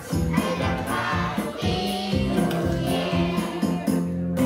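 A group of young children singing a New Year song together over a recorded backing track with a steady beat.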